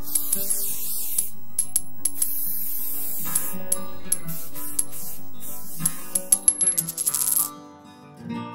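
Intro music with sustained tones, overlaid with hissing swishes and sharp clicks from a logo animation. Near the end a fast run of clicks quickens and cuts off suddenly.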